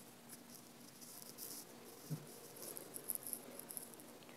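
Faint room tone: a low steady hum with soft scattered ticks and rustles, and one brief low sound about two seconds in.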